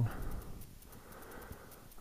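Faint handling noise and breathing as paper record sleeves are moved about, with a soft click about one and a half seconds in.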